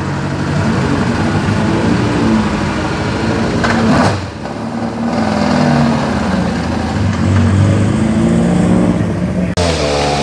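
SEAT Ibiza rally car's engine running and revving up and down repeatedly as the car moves off slowly, with a short dip just after four seconds. Near the end it cuts to another rally car's engine.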